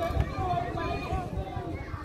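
Chatter of several people's voices, none near enough to make out, with wind rumbling on the microphone.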